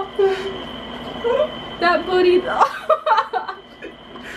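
People's voices: indistinct talking and light laughter, the words not clear.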